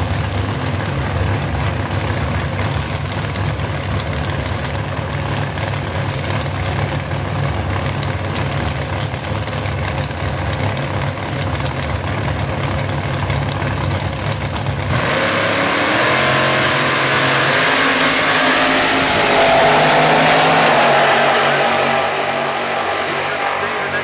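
Supercharged Modified Altered drag car's engine idling at the start line. About fifteen seconds in it launches into a loud full-throttle pass that rises in pitch, then fades as the car runs away down the strip. The commentator hears the car as not sounding happy.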